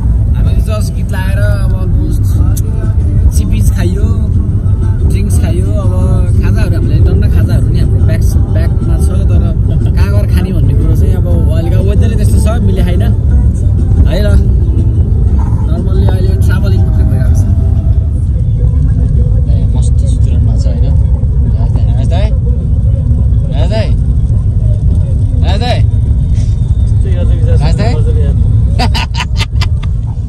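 Steady low road and engine noise heard inside a moving car's cabin, with a voice talking over it.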